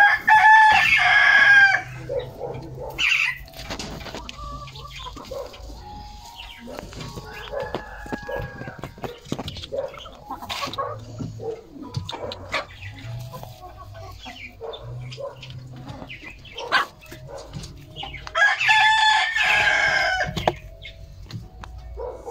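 A rooster crows twice, once at the start and again near the end, each a loud call of about two seconds. Softer chicken clucking comes in between.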